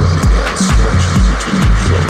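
Progressive house dance music: a steady four-on-the-floor kick drum and bassline at about two beats a second, with ticking hi-hats above.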